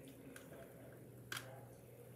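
Two light plastic clicks about a second apart, the second sharper, from the blue plastic O2cool handheld mist fan being handled and worked open, over near-silent room tone.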